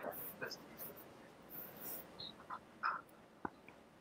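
Quiet room tone over an open microphone, with faint scattered short noises and one sharp click about three and a half seconds in.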